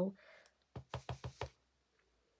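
Clear acrylic stamp block tapped quickly about six times onto an ink pad, re-inking the stamp. The taps come in a short run about a second in.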